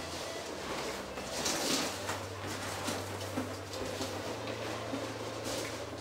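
Inflated latex balloons being handled and pressed into a balloon garland strip, rubbing against one another in faint, irregular rustles, over a low steady hum.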